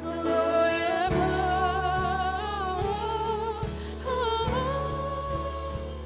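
Live worship band playing: a singer holds long, wavering notes without clear words over sustained keyboard and bass, with a deeper bass note coming in about a second in.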